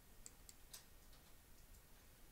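Near silence, with a few faint, short high clicks in the first second and a couple more later.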